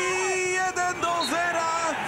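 Football commentator's excited goal call: one long held shout, then the score called out, "1-0".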